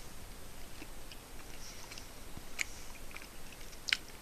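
Quiet chewing of a bite of soft Morbier cheese: faint mouth sounds with scattered small clicks, and a sharper click near the end.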